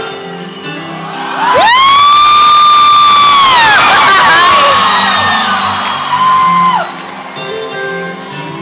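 Concert music and crowd noise, with a loud, high, steady cheer from an audience member close by. It starts about one and a half seconds in, holds for about two seconds and falls away, and a shorter one comes near the end.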